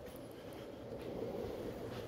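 Faint, low rumbling background noise in a garage, swelling slightly toward the end, with no distinct events.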